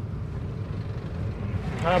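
Steady low rumble of engine and road noise inside a moving car's cabin. A man starts talking near the end.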